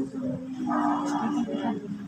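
A person's voice holding one long, drawn-out vowel sound for nearly two seconds, loud and steady in pitch.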